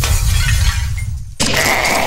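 Crash-like sound effects from a TV channel promo. A dense crashing noise fades out, then about a second and a half in it cuts abruptly to a new burst of noise with a thin whistling tone as the channel bumper starts.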